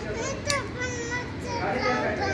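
High-pitched voices talking and calling in the background, with a sharp click about half a second in.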